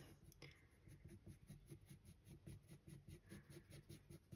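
Faint scratching of an HB graphite pencil on drawing paper: a quick, regular run of short sketching strokes.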